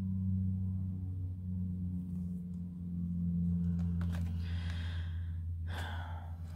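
Low, sustained drone of ambient background music, its upper tone dropping slightly in pitch about a second and a half in. A brief rustle of cards being handled comes near the end.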